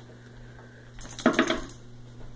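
Wooden toy blocks clattering: a quick run of several hard knocks about a second in.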